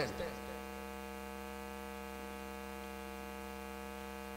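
A steady electrical mains hum with a long row of overtones, carried through the microphone and sound system while nobody speaks.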